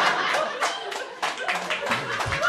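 Audience clapping and laughing, irregular hand claps over a general crowd noise.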